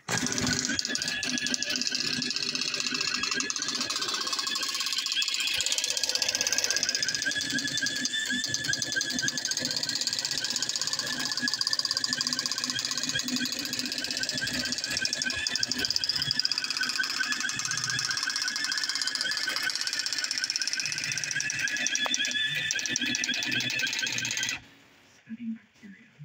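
Commodore DPS 1101 daisy wheel printer running its self-test, its print hammer striking the daisy wheel in a rapid, continuous clatter as it prints lines of the character set. The clatter stops suddenly near the end.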